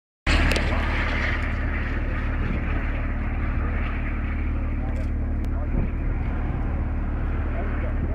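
Steady low rumble of vehicle noise with a constant hum, and faint voices in the background.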